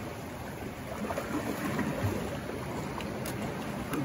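Sea surf washing against the rocks: a steady wash of water noise.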